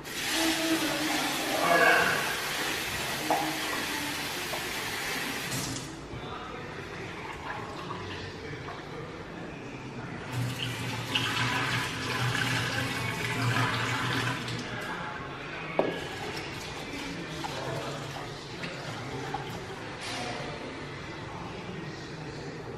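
Kitchen tap running into a bowl as pearl millet is rinsed, the water swirled and tipped out. The tap runs hard for the first six seconds, again from about ten seconds in, and once more near the end, with a light knock of the bowl about sixteen seconds in.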